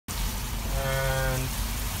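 Vegetables and sea cucumber sizzling steadily in a frying pan. A voice hums a drawn-out sound on one pitch for under a second about midway through.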